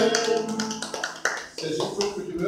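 A man's unaccompanied singing voice holds a last note that fades out in the first half-second, followed by a run of sharp taps and then a voice starting to speak near the end.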